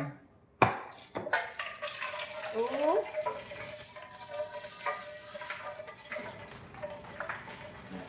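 Used frying oil being poured from the pan into an empty metal can: a sharp knock about half a second in, then a continuous pour with a ringing note that rises briefly near the middle, tapering off toward the end.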